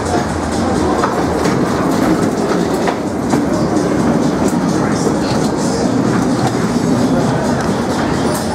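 Ghost-train dark-ride car running along its track: steady wheel noise with occasional short clicks.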